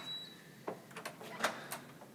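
A door's handle and latch being worked as the door is opened: a few sharp clicks and knocks in the second half.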